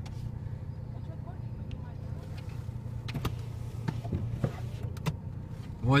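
Car engine idling, heard from inside the cabin as a steady low hum, with a few short knocks on the car's body as snow is brushed off the outside. A man's voice starts at the very end.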